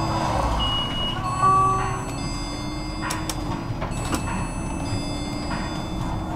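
Inside a city bus: the engine and drivetrain run with a steady hum as the bus pulls away from a stop and picks up speed. About a second in come two short electronic beeps, the second lower in pitch, and a few sharp rattles from the bus body follow.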